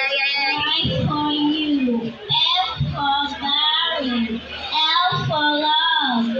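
A young girl singing into a microphone through the PA, in held notes that slide between pitches, phrase after phrase with short breaks.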